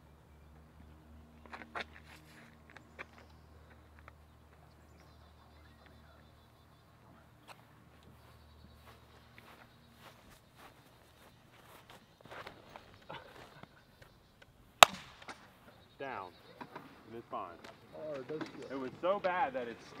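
Scattered light clicks over a faint low hum, then a single sharp crack about three-quarters of the way through, the loudest sound. Indistinct voices follow near the end.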